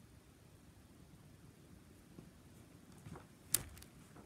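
Pages of a large book being turned by hand: quiet handling, then a few short paper rustles and a single sharp page snap near the end.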